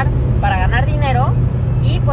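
A woman's voice speaking inside a car, over a steady low drone of car cabin noise.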